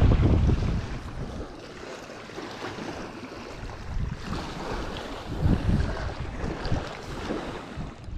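Wind rumbling on the microphone, strongest in the first second and again in short gusts later, over small waves lapping at the water's edge.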